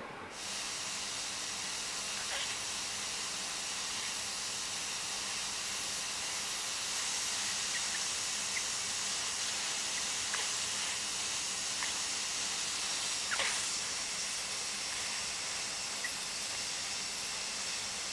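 Hot-air plastic welder giving a steady hiss of hot gas from its tip as TPO welding rod is melted onto the tab, with a few faint ticks.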